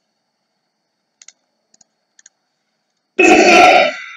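A few faint clicks, then about three seconds in a single loud, short vocal noise from a person, under a second long.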